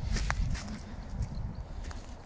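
Footsteps on frosty forest ground, a few knocks and crunches early on, over a constant low rumble of wind on the microphone.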